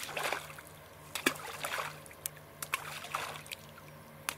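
Balls of groundbait splashing into pond water beside a fishing float as they are thrown in, one right at the start and a softer one near the middle, with a few small clicks between.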